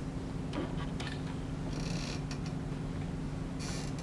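Room tone: a steady low electrical or ventilation hum, with a few faint clicks and two short hissy rustles, one about halfway through and one near the end.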